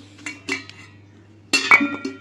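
Stainless steel pots, bowls and lids clinking as they are handled. A few light clinks come first, then a louder burst of clanks near the end that leaves a metallic ringing.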